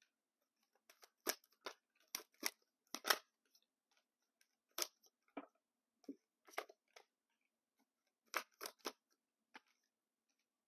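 A tarot deck being shuffled by hand: about a dozen short, sharp card snaps in irregular clusters, the loudest about three seconds in.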